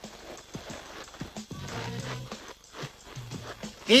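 Film soundtrack music with low held notes and scattered sharp clicks.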